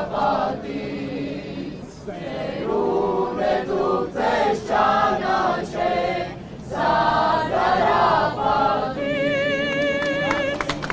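A crowd of young men and women singing a song together in unison without accompaniment, in phrases with short breaks, ending on a long held note near the end.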